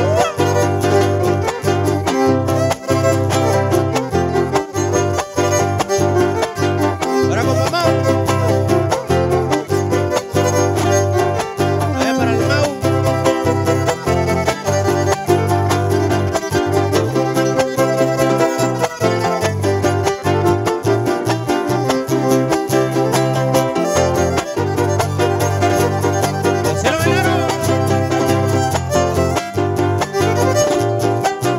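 A live huapango band plays an instrumental passage: a violin carries the melody over fast strummed strings and a steady bass line.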